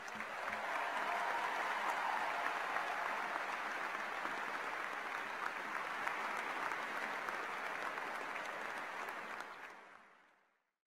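Large audience applauding, building up over the first second, holding steady, then fading out near the end.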